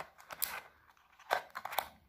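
Stiff white cardboard packaging scraping and rustling as a phone charger is worked out of its snug cardboard tray: a few brief scrapes, the loudest about a second and a third in.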